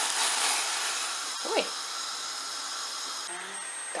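Dry pea soup mix poured into a pot of boiling water, hissing loudly as it hits the water, then easing to a steadier hiss of the boil.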